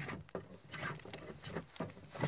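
A knife blade drawn in a quick series of short cutting strokes through a thin strip pressed against a wooden board, about three or four scrapes a second.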